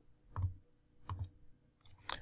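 Two faint computer mouse clicks, about three quarters of a second apart.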